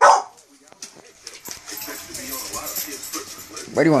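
Pit bull-type dog barking once, loudly, at the start, then quieter clicking and shuffling as she moves about on a tile floor.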